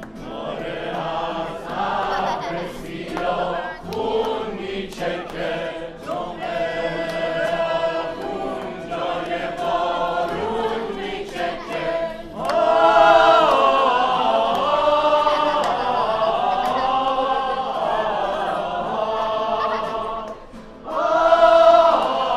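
A mixed group of men and women singing together in chorus. The singing grows louder and fuller about twelve seconds in, dips briefly near the end, then comes back loud.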